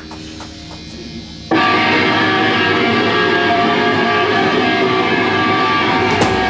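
Live rock band's electric guitars coming in suddenly and loud about a second and a half in, playing sustained, ringing chords without drums.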